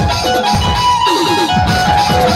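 Amplified Indian banjo, a keyed zither, plucked and keyed through a melody of held, sliding notes over a steady low beat.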